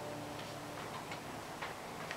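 The final acoustic guitar chord rings out and fades away, followed by a few faint, scattered clicks and small knocks.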